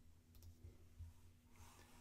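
Near silence with a faint steady hum and a couple of faint clicks from computer input, about a third of a second in, and a soft faint rustle near the end.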